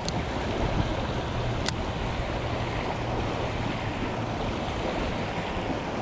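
Steady rush of a creek's riffle, with two brief sharp clicks, one at the start and one a little under two seconds in.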